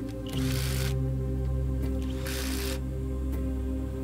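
Background music with sustained tones. Two short bursts of a cordless impact driver run a bolt down, about half a second in and again past the two-second mark, each lasting about half a second.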